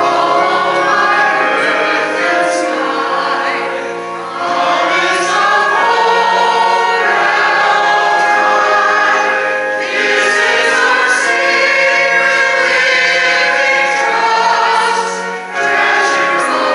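Mixed church choir of men and women singing an anthem in sustained phrases, with short breaks between phrases about four seconds in and near the end.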